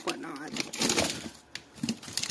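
A woman's voice, quiet and indistinct, with light rustling and handling noise.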